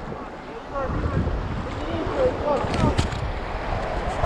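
Shallow surf washing over the sand, with wind buffeting the microphone. Faint, broken voices call out in the background, and there is a single short click about three seconds in.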